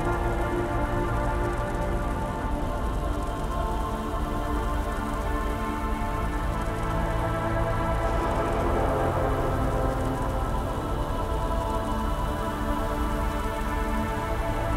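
Dark ambient music: a low synth drone of several held tones over a steady, rain-like hiss of industrial ambience, swelling slightly in the middle about eight seconds in.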